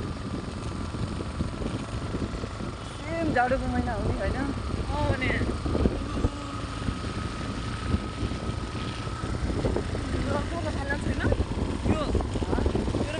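Ride on a motorcycle on a wet road: engine running with heavy wind noise on the microphone and a thin steady whine that stops near the end. Voices talk briefly over it.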